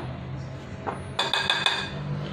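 Soft background music with steady low notes, a brighter ringing passage in the second half, and a light clink of a small ceramic bowl against a glass mixing bowl a little under a second in.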